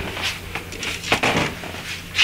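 Soft rustling and a few light knocks from someone moving and handling a camera in a small room.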